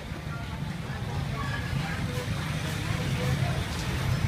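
Street ambience: a steady low rumble of motor traffic, with people's voices talking in the background.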